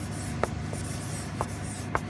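Permanent marker writing across a fluoropolymer clear-coated composite panel, in short strokes, with three light ticks of the felt tip against the panel.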